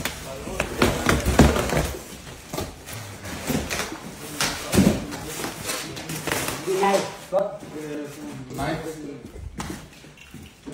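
Furniture being unpacked from a cardboard shipping box: cardboard and plastic packing wrap handled and pulled away, with several knocks and thuds in the first couple of seconds and another near the middle.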